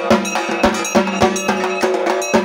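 Dhak drums beaten with sticks in a fast, continuous rhythm, with a kansor, a small brass gong, struck in time and ringing through it.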